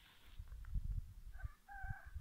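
A rooster crowing: one long, steady call that begins about one and a half seconds in. Under it, an irregular low rumbling on the microphone.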